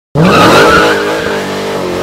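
Car engine revving hard through a burnout with tyres squealing. It starts abruptly, climbs in pitch at first, then holds high revs.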